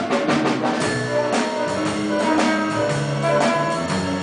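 Brassy, jazz-style show-tune band music, with trumpets and trombones over sharp percussion hits: an instrumental passage of the number with no singing.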